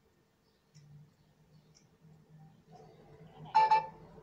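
Faint room tone, then, about three and a half seconds in, a short electronic notification sound with a steady tone as Bluetooth headphones connect to a phone.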